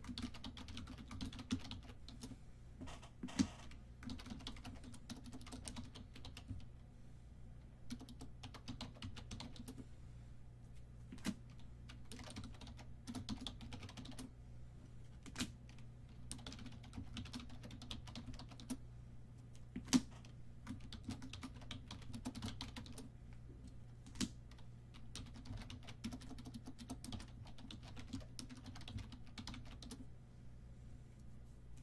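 Typing on a computer keyboard: irregular runs of key clicks with short pauses between words, and a few sharper, louder keystrokes, over a steady low hum.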